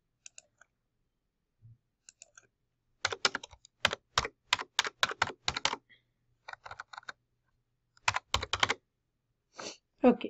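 Computer keyboard being typed on: a few scattered keystrokes, then a quick run of keystrokes about three seconds in and two shorter runs later.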